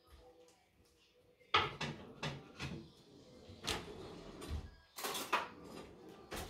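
Off-screen household handling noises: a sharp knock about one and a half seconds in, then a few more knocks and rustles of things being moved, with a denser cluster near the end.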